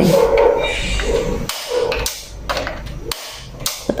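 A gas stove burner's igniter being clicked over and over, about six sharp, irregular clicks in the second half, while the burner fails to light.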